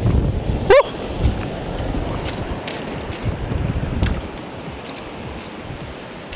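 Wind buffeting the microphone with surf washing in the background, and one brief voice-like call just under a second in.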